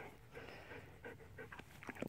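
Young German Shepherd dog panting faintly and quickly, close by.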